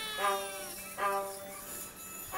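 Violin playing short notes that slide up into pitch, after a long held note that sinks slowly in pitch.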